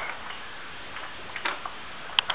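A few light clicks about one and a half seconds in, over a steady quiet hiss, from the plastic baby walker and its tray toys as the baby moves in it.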